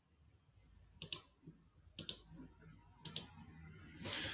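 Faint computer mouse clicks: three double clicks about a second apart, made while screen sharing is being set up.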